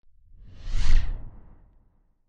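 A whoosh sound effect for an animated logo: a single swell with a deep rumble under it, peaking about a second in and then fading away.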